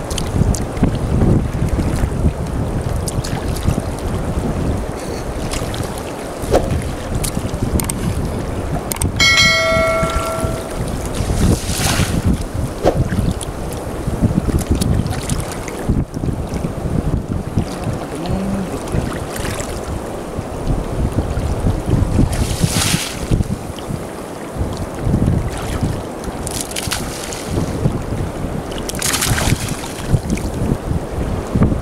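Wind buffeting the microphone over shallow estuary water, with several splashes as a man wades and works a fishing net through the water and mud. A short pitched tone sounds about nine seconds in.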